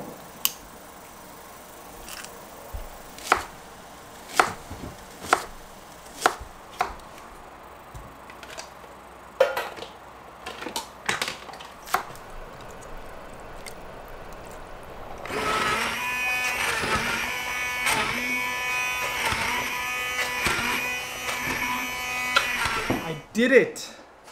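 A kitchen knife chopping potatoes on a wooden cutting board: irregular sharp knocks of the blade striking the board. From about fifteen seconds in, a louder, sustained many-toned sound with a pulse about once a second takes over, then stops just before the end.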